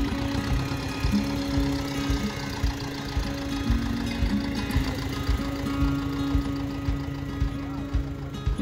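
Acoustic folk instrumental music playing over the steady running of an old farm tractor's engine as it pulls a seedling transplanter.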